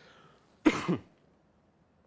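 A man coughs once, a short sharp cough about two-thirds of a second in.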